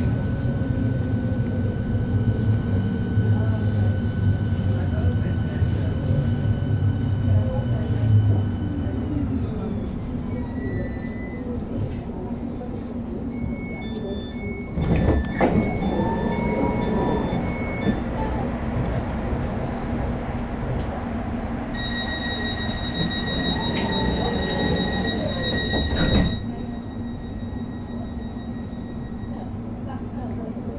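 Berlin S-Bahn class 484 electric multiple unit braking to a stop, its drive whine falling in pitch and dying away, over a steady low hum. At the platform its doors open with a series of beeps, then a steady warning tone sounds for about four seconds before the doors close with a thump.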